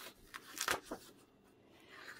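Pages of a six-inch paper pad being turned by hand: about four short papery rustles in the first second.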